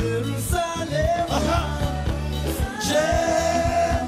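A live band performs with a male lead voice singing long held notes over steady bass and regular drum hits.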